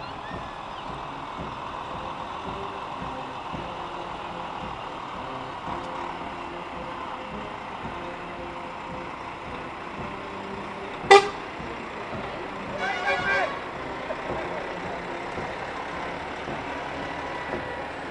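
Heavy parade lorries moving slowly past, their engines making a steady running noise. About eleven seconds in comes a short, sharp horn toot, followed a second or so later by a longer, broken horn blast.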